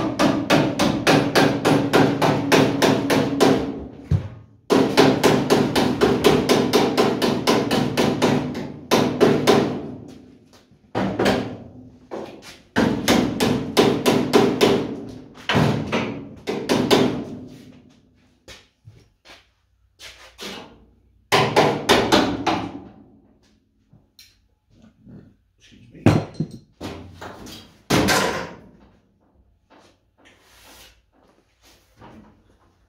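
Hand hammer striking the steel bodywork of a camper van in quick runs of about four to five blows a second, the panel ringing under the blows. The runs break off in short pauses, and in the second half there are only scattered single knocks.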